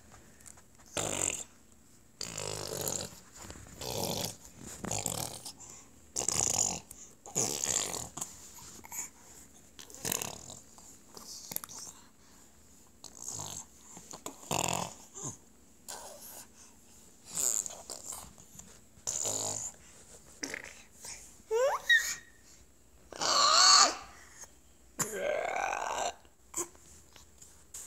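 A baby's breathy, spluttering mouth noises, repeated about once a second. Late on, a brief rising squeal, then a louder voiced cry.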